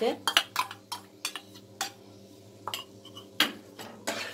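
Metal utensil tapping and scraping against a nonstick pan and bowl: a quick cluster of clinks at the start, then single sharp knocks spaced out through the rest, over a faint steady low hum.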